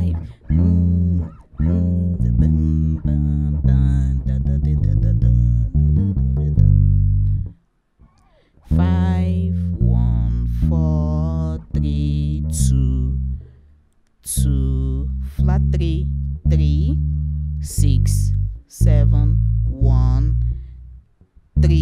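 Electric bass guitar played fingerstyle: a gospel lick in B flat, a run of low notes starting from the fifth. It comes in three phrases, with a short break about a third of the way in and another about two-thirds of the way in.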